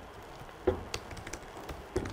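Laptop keyboard typing: an irregular run of short key clicks, starting about two-thirds of a second in.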